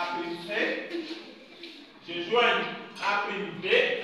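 Speech: voices talking in bursts throughout, words the transcript did not catch.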